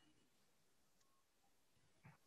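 Near silence: a pause on an online call, with only a couple of very faint short tones barely above the noise floor.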